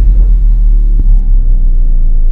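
Loud, deep cinematic bass rumble from a logo-intro sound effect, held steady, with a faint click about a second in.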